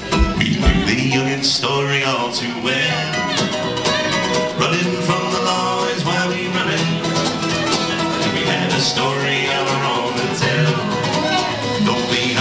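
A live country/bluegrass-style folk band playing, with strummed acoustic guitar and plucked upright bass under a sustained melodic lead line.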